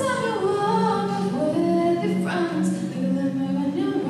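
A young woman singing an original song in long held notes, accompanying herself on a steel-string acoustic guitar.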